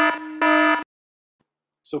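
Electronic buzzer alarm played as a 'language alert' warning sound effect: a harsh steady buzzing tone that pulses loud and soft about every half second and cuts off abruptly under a second in. Silence follows, then a voice briefly near the end.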